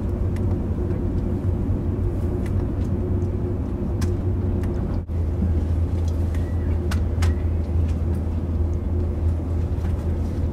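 Steady low rumble of a moving passenger train heard from inside the carriage, with a constant hum and a few single sharp clicks scattered through it.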